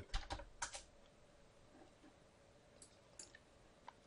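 Faint keystrokes and clicks on a computer keyboard and mouse as a value is typed into a field: a few quick taps in the first second, then a few single clicks later on.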